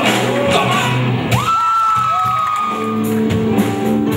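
Live rock band playing with singing, electric guitar and drums. About a second in a long high note slides up and holds for over a second, and near the end a steady bass-and-drum pattern comes in.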